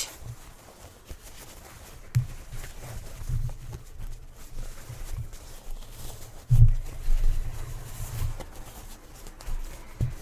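Hands working a freshly turned, stitched fabric piece: soft fabric handling with irregular low thumps, the heaviest about six and a half seconds in.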